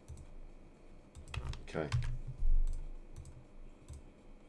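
Scattered computer mouse clicks and keyboard taps on a desk, with a low thump about halfway through and a single spoken "okay".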